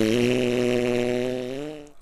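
A man's voice holding one low, steady droning note for nearly two seconds. It bends slightly upward near the end and fades out.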